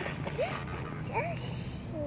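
Water splashing as an anhinga drops from the bank into the lake, with a few short chirping glides and a brief hiss about a second and a half in.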